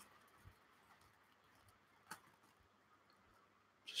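Near silence: room tone, with one faint short click about halfway through.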